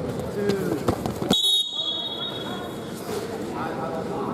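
A sudden shrill high-pitched signal tone about a second and a half in, of the kind a referee's whistle or a mat timer gives, steady and fading away over about a second, with voices around it.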